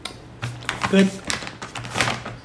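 A quick, irregular run of sharp clicks and crinkles from objects being handled close to the microphone, starting about half a second in, with one short spoken word around the middle.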